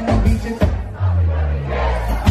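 A live band playing loud through a club sound system, heard from within the crowd: drum hits and a held bass note under the music, with crowd noise.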